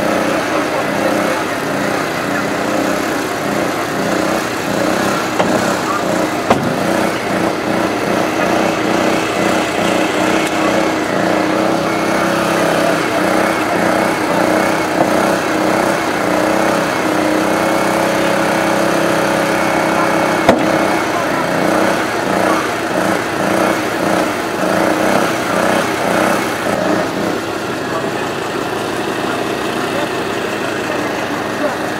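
Small petrol engine of a portable hydraulic rescue-tool power unit running steadily while the hydraulic tools work on a car body, with a few sharp knocks.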